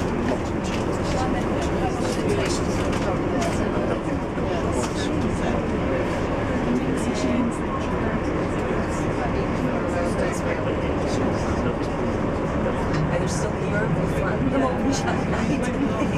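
Cabin sound of a moving coach bus: a steady engine and road rumble under indistinct passenger chatter, with frequent short ticks.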